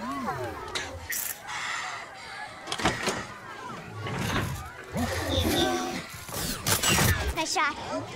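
Action-film soundtrack: a gliding vocal call at the start, then several sharp metallic crashes and impacts over a low rumble, with orchestral score and voices mixed in.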